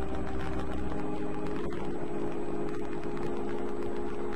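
A steady hum of several held low tones, with a deeper rumble underneath that drops away about a second in.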